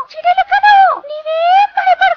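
A little mouse cartoon character's high-pitched voice, running in a string of short syllables that rise and fall in pitch.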